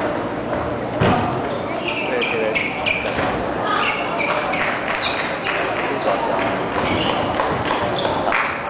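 Table tennis balls clicking off tables and bats at several tables across a large hall, with voices chattering throughout and one louder knock about a second in.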